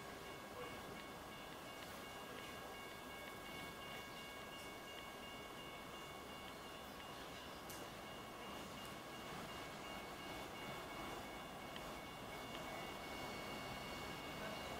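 A distant approaching train: a faint steady rumble that grows a little louder near the end, over several thin, steady high tones.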